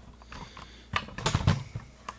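Handling noise: a quick cluster of light clicks and knocks about a second in, as the camera is moved about over the bench.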